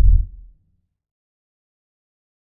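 Deep bass boom of an animated logo sting, dying away about half a second in.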